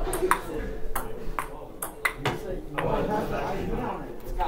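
Table tennis rally: a celluloid ball pinging sharply off paddles and a table made of pushed-together classroom desks, a quick string of hits often about half a second apart.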